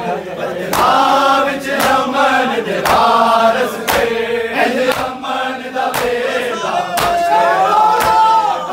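Crowd of men chanting a Punjabi nauha (mourning lament) in unison. Collective chest-beating (matam) lands as a sharp slap about once a second, keeping the beat.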